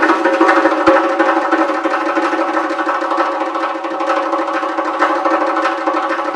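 Uzbek doira, a frame drum with metal rings inside, played solo: a couple of deep bass strokes in the first second, then a sustained fast roll with the rings jingling in a continuous shimmering wash.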